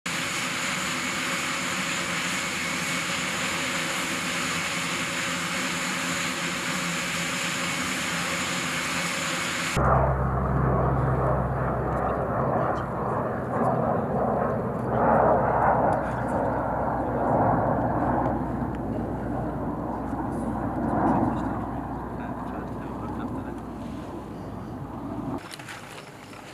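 Military transport aircraft's engines running steadily, a loud even rush with high steady whining tones. About ten seconds in the sound changes abruptly to a steady low rumble with irregular louder swells, which slowly fades.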